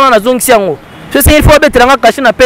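Speech only: a man talking animatedly, with a short pause about a second in.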